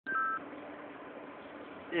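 A short electronic beep of two steady tones at the very start, then only a faint steady low hum until a man's voice begins at the end.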